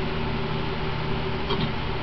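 Steady whir and hum of an electric fan running in a small room, with a faint click about one and a half seconds in.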